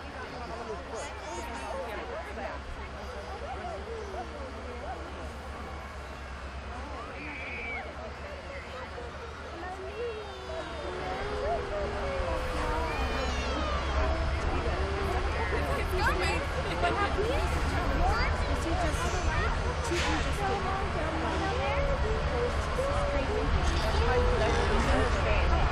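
Crowd of spectators chattering while a Canadian Pacific Holiday Train diesel locomotive pulls in, its low engine rumble growing louder from about halfway through.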